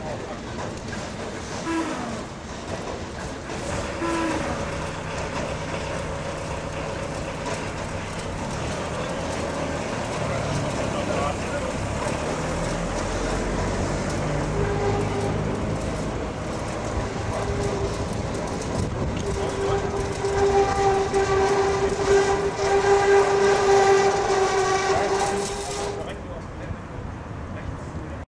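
Electric roller shutter door of a tram depot hall running down: a steady motor whine with overtones that grows louder over the last several seconds and stops just before the door is shut.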